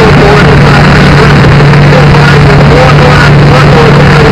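A loud, steady engine-like drone, overloaded and distorted, with voices calling over it.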